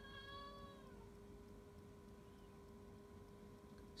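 A domestic cat meowing once, a single call about a second long that drops slightly in pitch at its end: the cat asking for its lunch.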